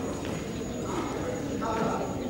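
Indistinct voices of a crowd of spectators and competitors in a large sports hall, with one voice briefly a little clearer near the end.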